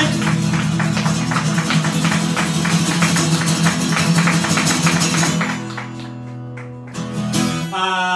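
Acoustic guitar strummed fast, a rapid run of strokes that stops about five and a half seconds in and leaves the last chord ringing. Near the end a man's voice comes in, singing a held note.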